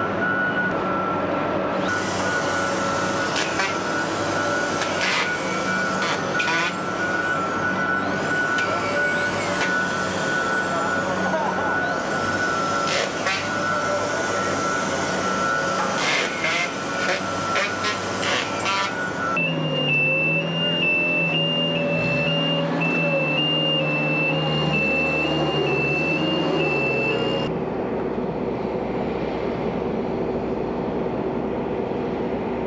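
Construction-site noise in a large building shell: machinery running with a steady high whine, and repeated sharp metallic knocks and clanks. About two-thirds of the way through the sound changes abruptly to a low hum with a pulsing high tone over it.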